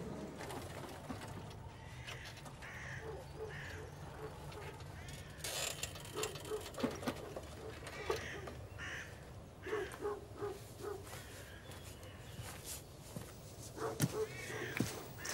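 Outdoor country ambience with birds calling: groups of short, low, repeated cooing notes, like a pigeon's, several times over, with a few higher chirps and a faint steady background rumble.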